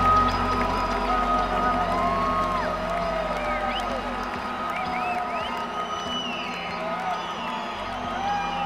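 Rock band playing live in an arena, heard from the audience with the hall's echo, with crowd cheers and whoops over the music. The low bass notes drop away about four seconds in.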